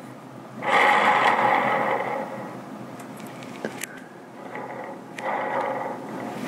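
Broadhead-tipped carbon arrow spun on an arrow spinner: a whirring rush of the shaft turning on the spinner's rollers. It starts abruptly and dies away over about a second and a half, with a second spin near the end. The arrow is spun to check its insert tuning, whether the broadhead tip stays on a marked dot.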